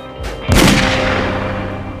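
A single loud bang about half a second in, fading slowly over the following second and a half, over a low held musical drone.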